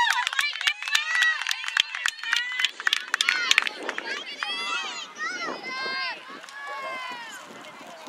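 High-pitched voices of a soccer crowd and players shouting and cheering, with sharp hand claps through the first three and a half seconds. The calls thin out over the last few seconds.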